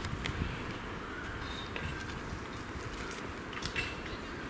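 Rustling of brush and a few sharp snaps of twigs as a hiker with a heavy pack and trekking poles pushes uphill through forest undergrowth, over a steady low rumble. One snap comes just after the start and a small cluster near the end.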